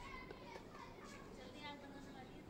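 Faint chatter of several people's voices in the background, with no one voice clear.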